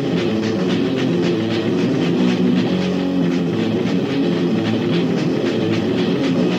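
Death metal played by a band on a lo-fi demo recording: heavily distorted electric guitars chugging a riff over fast, rapid-fire drumming, the sound continuous and dense.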